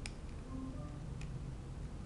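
Small clicks of a mobile phone being handled as SIM cards are fitted into its slots: a sharp one at the start and a fainter one about a second later, over a low steady hum.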